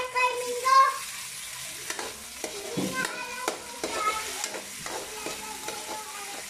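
Chopped tomatoes and sautéed onions sizzling in hot oil in a wok. A metal spatula stirs and scrapes them, knocking against the pan with sharp clicks from about two seconds in.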